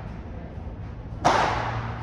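One sharp pop of a padel ball being struck in a rally about a second in, echoing in the covered court hall.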